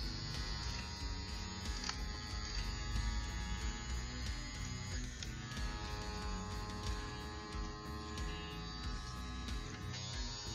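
Gamma+ Cyborg cordless hair clipper's brushless motor running with a quiet, steady hum while a guard is fitted to the blade. Soft background music plays under it.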